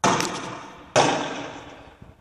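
Two loud bangs about a second apart, each dying away in a long echoing decay. These are shots or blasts from riot-control weapons.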